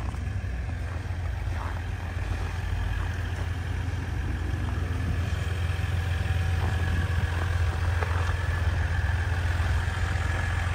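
A 2017 Ram 1500's 3.0-litre EcoDiesel V6 turbodiesel idling steadily, growing slightly louder over the seconds.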